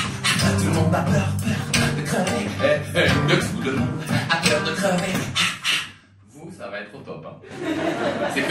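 Live beatbox rhythm with voice into a microphone: quick, regular percussive mouth sounds over a low held sung note, cutting off suddenly about six seconds in.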